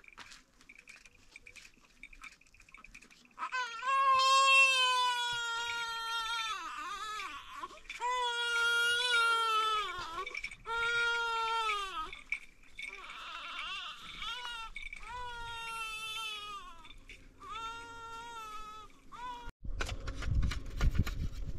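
Infant crying: a run of long wails, each dropping in pitch at its end, with short breaks for breath. It starts about three and a half seconds in and goes on until just before the end.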